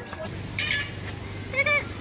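Two short, high-pitched animal calls, one about half a second in and one about a second and a half in.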